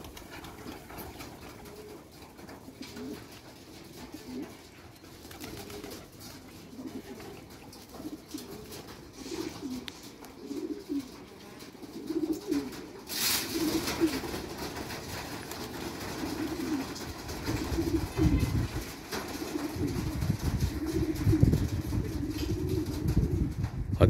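Domestic pigeons cooing, many low warbling coos repeating and overlapping throughout. A short rush of noise comes about halfway through, and a low rumble builds in the last few seconds.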